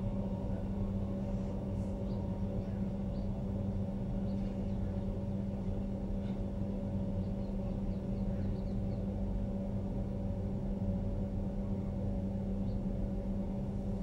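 Steady low electrical hum and hiss from an open microphone and sound system, unchanging throughout, with a few faint short high ticks scattered through it.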